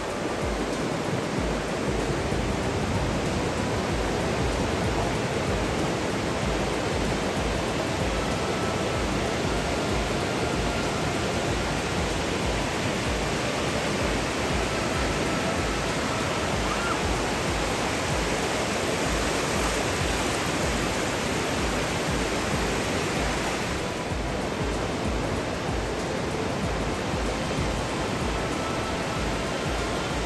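Ocean surf breaking steadily on a beach, with wind buffeting the microphone.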